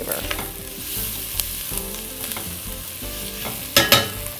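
Chopped onions and garlic sizzling in an enameled cast-iron pot as they are stirred with a silicone spatula, with light scraping clicks. Two sharp knocks come near the end.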